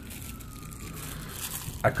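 A faint tone slowly rising and then falling, like a distant wail, under quiet rustling of the box's packaging. A man's voice comes in at the very end.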